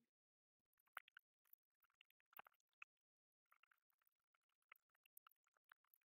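Near silence, with a few faint, short clicks and taps as the metal lantern heads and solar light unit are handled and fitted back together.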